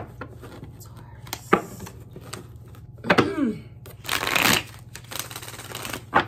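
Tarot deck being shuffled by hand: a few sharp card snaps and taps, with a longer burst of shuffling about four seconds in.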